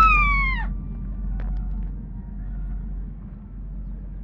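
A single high-pitched cry right at the start, falling in pitch and cutting off under a second in, followed by a low steady rumble.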